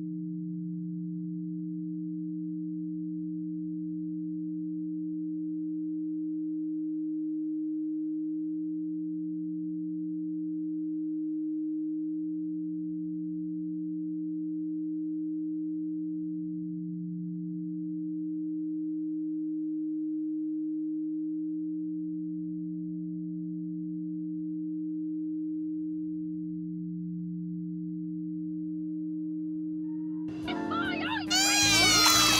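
A steady low electronic hum of two held tones sounding together, slowly swelling and fading every few seconds without a break.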